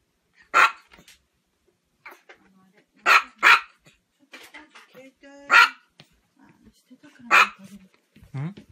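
A small Chihuahua barking: five sharp, high barks spaced irregularly, two of them in quick succession about three seconds in.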